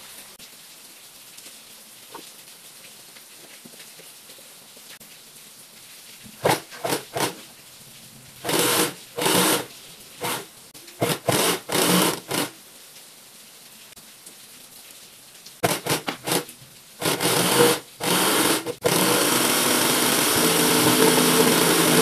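Industrial coverstitch machine (galoneira) sewing bias binding onto a fabric edge through a binder attachment. After about six quiet seconds it runs in a string of short bursts, then runs steadily for the last few seconds.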